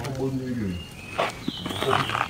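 People talking in the background. About a second in there is a brief scuffing noise, and near the end a short, high call.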